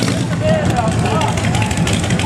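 Street traffic noise: vehicle engines running with a steady low rumble, with other people's voices over it.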